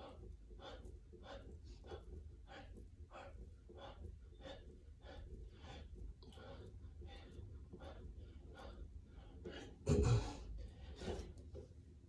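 A man breathing hard and fast through a set of push-ups, short breaths at about three a second. Near the end come a couple of louder, heavier breaths as the set ends.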